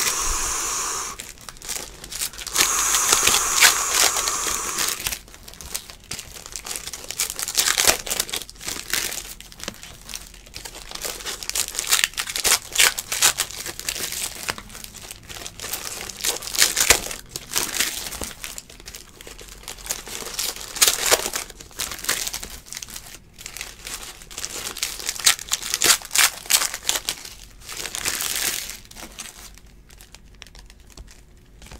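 Trading card pack wrappers being torn open and crinkled by hand, a quick run of crackles and rips, with a longer sustained tearing sound in the first few seconds.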